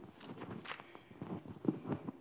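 Clip-on lapel microphone being handled and repositioned on a shirt: scattered rubbing and light knocks, a little louder near the end.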